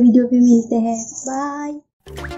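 A woman's voice in drawn-out, sing-song syllables held on a level pitch, cutting off just before the end.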